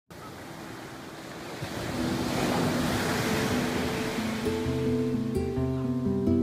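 Ocean surf washing onto a sandy beach, swelling loudest about two to three seconds in. Background music with held notes comes in about two seconds in and grows louder, taking over toward the end.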